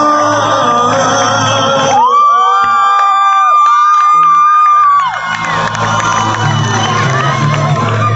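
Live pop band playing with a crowd cheering. About two seconds in the band drops out and one long high note is held for about three seconds, then the band comes back in.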